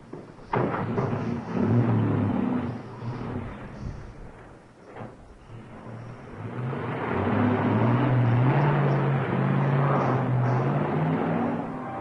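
A car door shuts just after the start, then an old car's engine runs and pulls away, getting louder with a slowly rising note in the second half.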